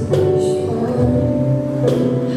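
Live band playing a song: electric guitars and bass guitar over a cajon and cymbal, with a sharp percussion hit just after the start and another near the end.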